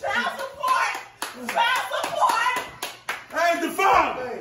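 Excited voices exclaiming over each other, broken by several sharp hand claps.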